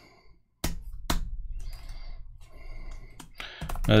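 Typing on a computer keyboard: scattered key clicks beginning about half a second in.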